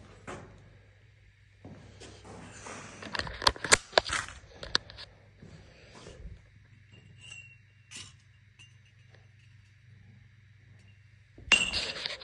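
A quick run of sharp metallic clinks and knocks about three to five seconds in, with a few fainter taps after it. Near the end there is a short, louder scraping rustle.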